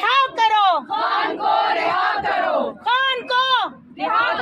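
A group of women shouting protest slogans together in loud, high-pitched chanted phrases, with a brief pause just before the end.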